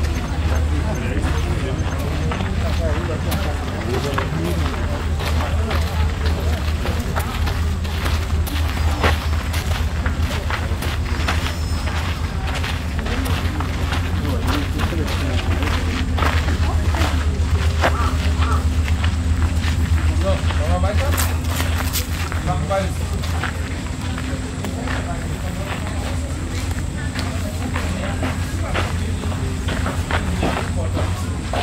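Indistinct voices of people talking in the background over a steady low rumble, with scattered short clicks and taps.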